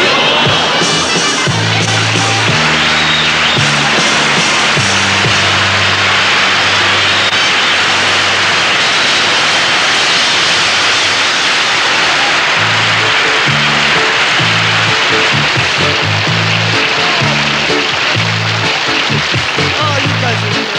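Studio audience applauding and cheering while the band keeps playing, a stepping bass line running underneath.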